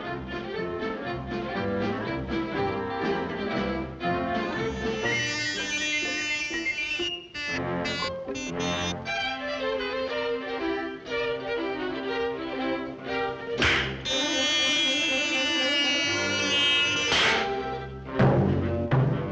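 Orchestral cartoon score with strings playing short, quickly changing notes, broken near the end by two brief loud swells a few seconds apart.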